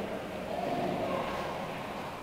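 A pause in the prayers inside a church: low room noise, with a faint, distant murmur of voices about halfway through.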